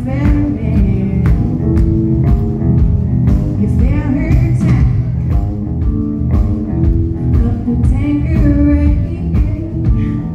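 Live blues-rock band: a woman singing over electric guitar and drums keeping a steady beat.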